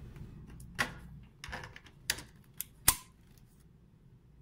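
Several sharp plastic clicks and knocks, spaced irregularly, as an RJ45 Ethernet cable plug is handled and pushed into a computer's network port. The sharpest click comes about three seconds in, as the plug latches home.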